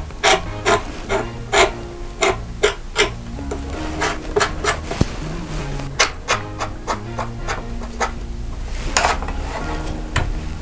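Background music with a light beat and steady low notes, with frequent short clicks and taps on top.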